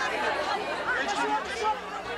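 A crowd of people chattering, many voices talking over one another at once.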